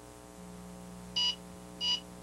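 Two short electronic beeps from a microwave oven's keypad, a little over half a second apart, as a cooking time of one minute is keyed in.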